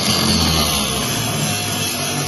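Angle grinder cutting into a car's steel floor pan, its disc whining steadily at speed as it throws sparks. A guitar rock track comes in under it.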